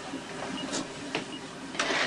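Bedside heart monitor beeping, short high beeps a little under a second apart, with a couple of sharp clicks and a louder rustle near the end.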